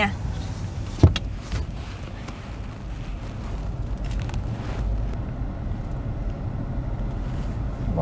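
Car driving slowly, heard from inside the cabin: a steady low rumble of road and engine, with one sharp click about a second in.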